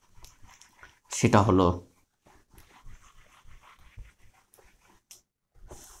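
Felt duster wiping a whiteboard: a run of faint, uneven swishing rubs as the writing is cleared.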